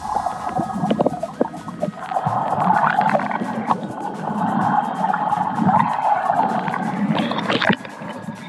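Muffled underwater sound recorded with the microphone submerged in lake water: a churning, gurgling rumble with bubbles. Sharp splashes come as it breaks the surface near the end.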